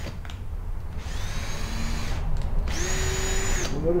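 Cordless drill boring a bolt hole through the rim of a plastic toilet flange, run in two short bursts of whine of about a second each, the second one steadier.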